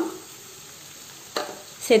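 Chopped onions sizzling in hot oil in a pan, a steady hiss, with one sharp crackle about one and a half seconds in as curry leaves drop into the oil.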